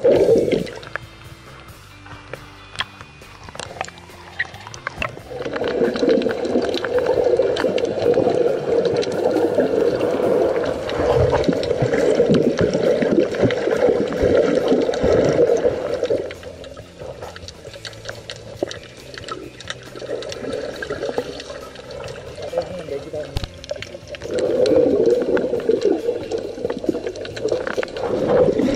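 Water churning and bubbling as heard by a camera underwater beside a swimmer, loud through the middle and again near the end, quieter between.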